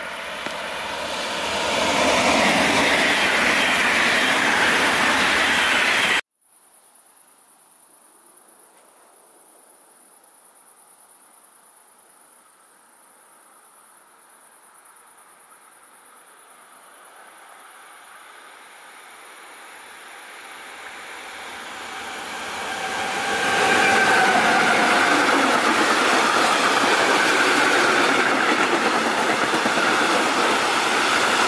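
An electric double-deck passenger train passes at speed, loud for the first six seconds and then cut off abruptly. A freight train follows, heard growing steadily louder as it approaches from a distance, then passing loudly and steadily with its long line of hopper wagons, with some thin ringing tones as the wagons go by.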